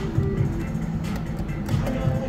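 Electronic tune from a Pinball reel slot machine while its three mechanical reels spin: a simple melody of held notes that step from one pitch to the next.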